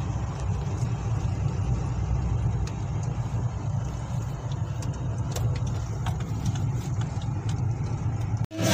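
Car running, heard from inside the cabin: a steady low engine and road rumble with a few faint clicks.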